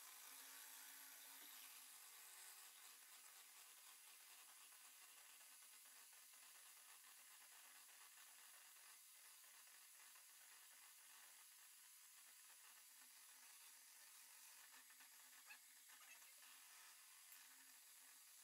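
Near silence: the sound track is muted, leaving only a very faint hiss.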